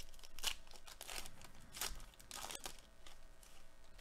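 A trading card pack's wrapper being torn open and crinkled by hand, in four or five short crackly bursts over the first few seconds.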